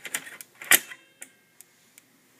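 3.5-inch floppy diskette being pushed into the slot of a Brother FB-100 disk drive: a quick run of small plastic clicks, with one loud click about three-quarters of a second in as it seats, then a couple of faint ticks.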